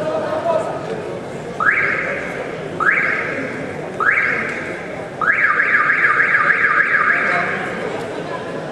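An electronic alarm sounding: three rising whoops about a second apart, then a quicker run of rising whoops, about four a second, for some two seconds, over a background murmur of voices.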